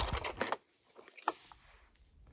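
A plastic toy truck is handled and pushed across a bedsheet: a brief rustle at the start, then near silence broken by one small click a little over a second in.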